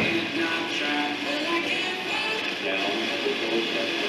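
Music with singing coming from a clock radio's small speaker, tuned to a station.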